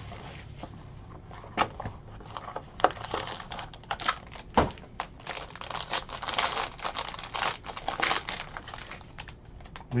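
A trading-card box is opened and the foil-wrapped pack inside is torn open and crinkled by hand: a dense run of crackling, heaviest in the second half, with one sharp snap about four and a half seconds in.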